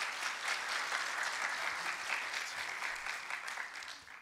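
Audience applauding, a dense even clapping that dies away near the end.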